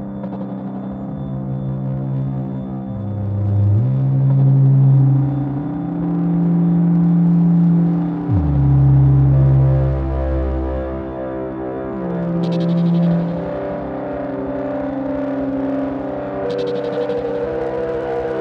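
Ambient generative synthesizer music from small analog synths: held bass and drone notes that slide slowly from one pitch to the next, with a deep low note coming in about halfway and holding for a few seconds. Two short bursts of hiss come in near the end.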